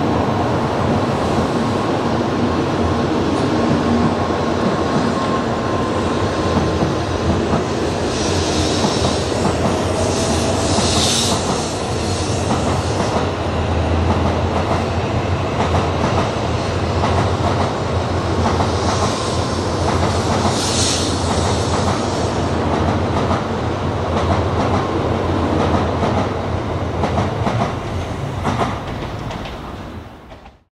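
N700-series Shinkansen train pulling out of the station and running past, a steady rumble with clickety-clack from the wheels. A faint whine sounds in the first few seconds, and two hissing swells come about ten seconds apart. The sound dies away near the end as the last car goes by.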